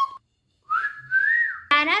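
A person whistling one short note that slides upward in pitch and holds, lasting about a second.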